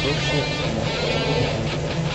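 Music with strummed electric guitar, with a voice over it.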